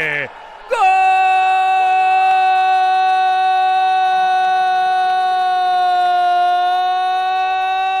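A Brazilian TV commentator's long goal cry, a single vowel held on one steady, loud note for about seven seconds, starting just under a second in.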